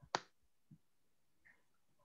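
Computer mouse clicking: one sharp click just after the start, then two or three faint clicks.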